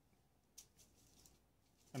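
Near silence: room tone, with a few faint, short rustles about halfway through.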